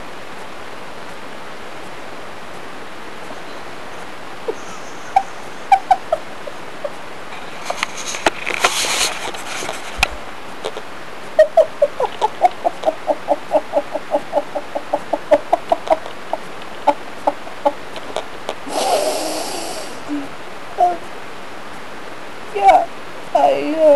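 A woman's voice making a fast run of short, even-pitched sounds, about five a second for some five seconds, with a few single ones before and after, over a steady hiss.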